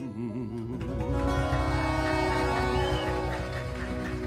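Live sertanejo band playing an instrumental passage with no singing. The full band with bass and drums comes in louder about a second in, under a wavering melodic line.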